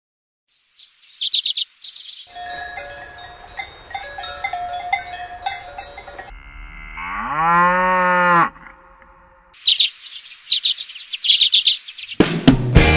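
Rural soundscape: birds chirping, a clanking bell ringing for a few seconds, then a cow giving one long moo about six seconds in, followed by more birdsong.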